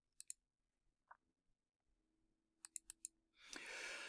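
Faint computer mouse clicks against near silence: two quick clicks at the start, then four more in quick succession a little before three seconds in.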